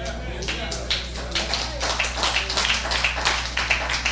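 Congregation applauding, a dense run of irregular claps, with scattered voices calling out in response.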